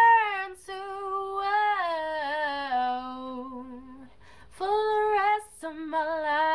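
A woman singing a cappella, one unaccompanied voice holding long wavering notes that step downward through a wordless run. Quick breaths come about half a second in and near the end, with a brief lull about four seconds in before the next phrase.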